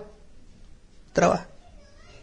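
A pause with faint room tone, broken about a second in by one short voice-like call.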